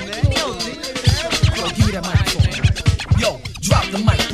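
Old-school hip-hop instrumental: a drum beat with kicks about four a second and turntable scratching over it.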